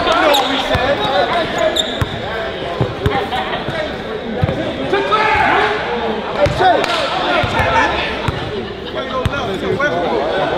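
A basketball bouncing on a hardwood gym floor, single thuds every second or so, under the constant chatter of a crowd in a large indoor gym.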